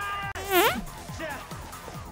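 Comedic fart sound effects. A held buzzy fart cuts off abruptly just after the start, then a short, loud fart rises sharply in pitch about half a second in, and a fainter one follows about a second in, over the film's score.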